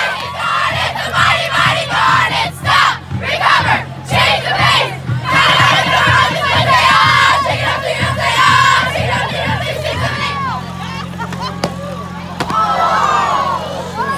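A group of teenage girls shouting and cheering together in loud bursts broken by short pauses, like a team chant, over a steady low hum.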